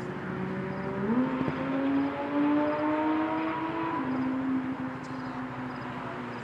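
Go-kart engine running on the track: its pitch jumps up about a second in, climbs slowly, then drops back a little about four seconds in.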